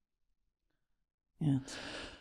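Dead silence for over a second, then a short spoken "yeah" followed by an audible breath.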